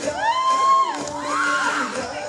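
Dance music playing for a stage performance, with a crowd of students cheering over it. Two high calls that rise and then hold, one lasting most of the first second and a shorter one about halfway through.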